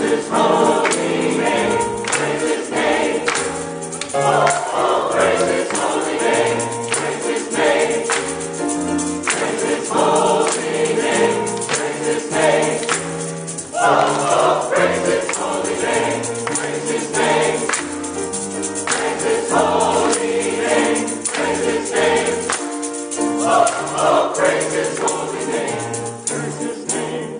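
Mass mixed choir singing an up-tempo gospel anthem with piano accompaniment and a tambourine keeping a rhythm.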